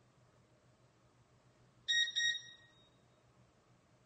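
Two quick electronic beeps, one right after the other, about two seconds in; the second fades out over about half a second.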